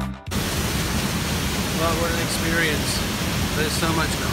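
Steady rush of a waterfall's falling water, close to the falls. Background music cuts off just as it begins, and a man's voice joins about two seconds in.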